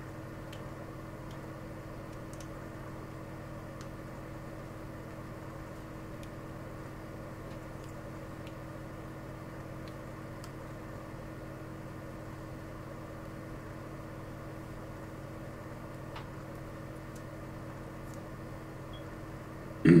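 A steady low electrical hum runs unchanged throughout, with a few faint clicks from wiring harness connectors being handled.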